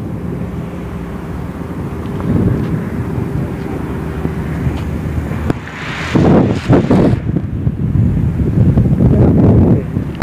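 Wind buffeting a phone microphone, with a steady tractor engine hum underneath through the first half that fades out about halfway. Louder gusty blasts come in the second half.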